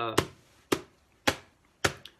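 Four evenly spaced percussive hits struck by hand on a ukulele, about one every half second, each short and dying away at once: the steady beat used as the song's opening percussion.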